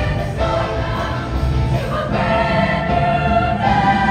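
Women's show choir singing with instrumental backing, moving into long held chords over the second half.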